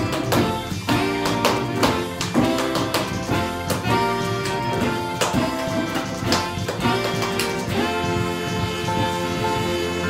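Band music with no vocals: keyboard and saxophone over a steady rock beat, sustained chords under regular drum hits.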